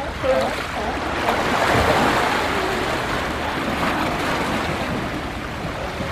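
Seawater rushing and splashing around a shoreline rock as a sea lion hauls itself out of the water onto it: a steady wash of surf.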